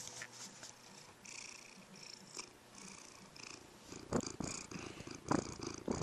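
A pet cat purring softly close to the microphone in slow breath-by-breath cycles, with a few louder rustling or sniffing noises in the second half.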